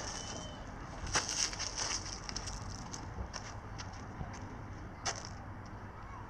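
Faint outdoor background hiss with a few scattered soft clicks and scuffs, the strongest of them a little over a second in and about five seconds in.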